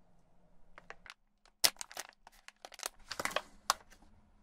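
Metallised foil pouch crinkling and crackling in the hand as it is opened and coiled leather shoelaces are pulled out of it. The sound comes as an irregular run of sharp crackles, loudest and densest in the second half.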